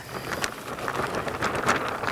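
Potting soil pouring from a plastic bag into a ceramic pot: a steady, grainy patter of falling soil.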